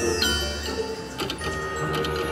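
Willy Wonka slot machine playing its bonus-round music and reel-spin effects, with chiming tones and a couple of short clicks a little over a second in as the spinning reels come to a stop.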